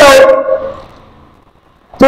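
A man's voice holding out a long vowel at the end of a phrase for about half a second, then fading away into near quiet before speech starts again.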